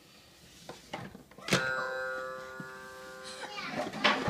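A child's coloured-key musical toy is struck once, about one and a half seconds in. It gives a bright chime of several tones that rings on and fades over about two seconds, with a few light knocks before the strike.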